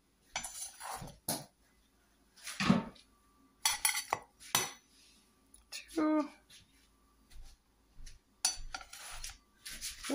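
Utensils clinking and knocking against a plate and a wooden cutting board as slices of pizza are lifted and set onto the plate: a series of separate clinks and knocks with short pauses between them.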